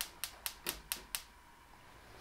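Gas hob's spark igniter clicking rapidly, about four to five clicks a second, as a burner is lit under a pot of oil; the clicking stops a little over a second in.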